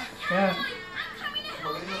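Voices of a toddler and an adult in short utterances, with music playing in the background.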